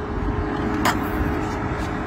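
Rear door of a Waymo driverless car being unlatched by its flush handle and swung open, with a single sharp click about a second in, over steady background noise.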